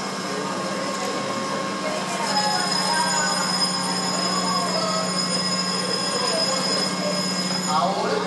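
Mitsubishi electric canal towing locomotive ('mule') giving a steady electric hum, with a thin high whine that comes up about two seconds in and holds steady.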